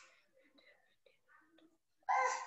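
Near silence, with a very faint, barely audible voice.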